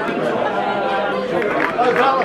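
Crowd chatter: many people talking at once in overlapping, indistinct voices.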